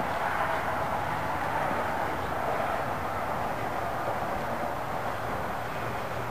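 A steady, even rushing background noise with a faint low hum underneath and no distinct events.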